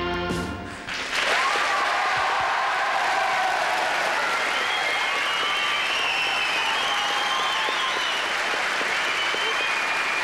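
Rock music stops about a second in, and a studio audience applauds and cheers steadily, with high-pitched shrieks wavering above the clapping.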